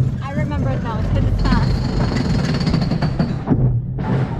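Roller coaster train rattling along its track and tilting up a climb, with a fast, steady clatter.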